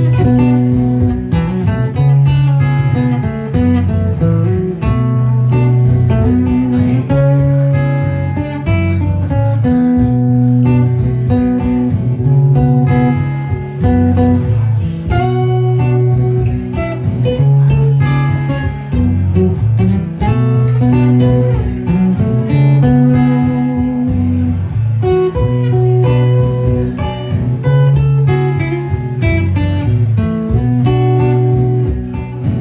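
Cole Clark acoustic guitar played solo: a bluesy, repeating riff picked over recurring low bass notes.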